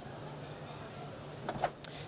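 Background noise of a large exhibition hall: a steady low hum under a faint even haze, with a few short clicks near the end.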